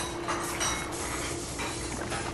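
Dishes and cutlery clinking and clattering at a kitchen sink as dishes are washed, a few short knocks over a steady low hum.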